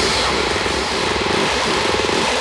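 A trance record played from vinyl in a breakdown: the kick drum has dropped out, leaving a steady buzzing synth over a wash of noise.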